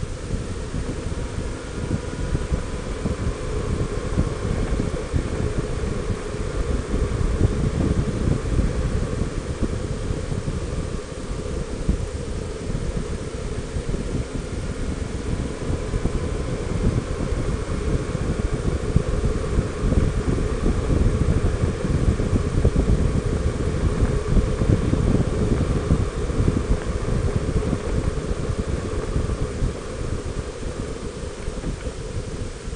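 Wind buffeting the microphone of a camera mounted on a Honda Gold Wing 1800 motorcycle at highway speed, a continuous rumbling rush that swells and eases, with the bike's flat-six engine and tyre drone underneath and a faint steady whine.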